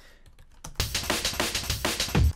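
A few computer keyboard keystrokes, then, about three-quarters of a second in, a chopped drum breakbeat starts playing. It is built from eighth-note slices of a break picked at random and sequenced by the Tidal live-coding environment at 200 BPM, giving fast, dense jungle/breakcore-style drums.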